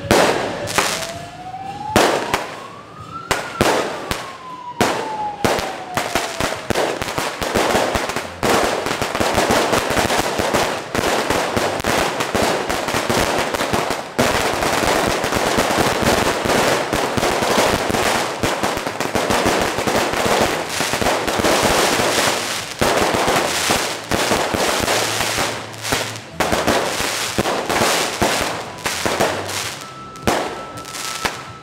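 Firecrackers set off on the street: scattered bangs at first, then dense, continuous crackling from about eight seconds in until near the end. Over the first several seconds a wailing tone rises and then falls, like a siren.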